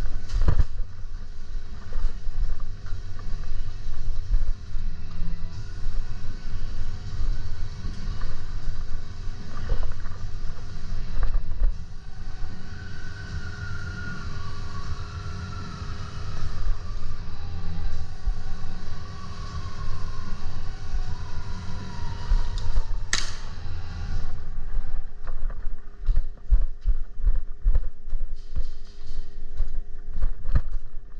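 Rumbling movement and handling noise on a body-worn camera as a player moves through an airsoft arena, over a steady hum. A few sharp cracks cut through it, the loudest about 23 seconds in.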